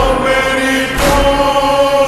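Slowed-and-reverb Urdu noha: a voice holds long, echoing sung notes over a slow beat that strikes about once a second.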